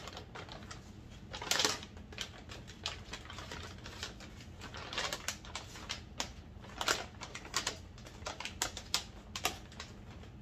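Mylar food-storage bag crinkling as hands gather and straighten its top edge inside a plastic bucket: irregular crisp crackles, loudest about one and a half seconds in.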